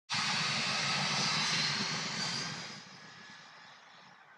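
Airplane engine noise as an aircraft flies by: it starts suddenly, stays loud for about two and a half seconds, then fades away.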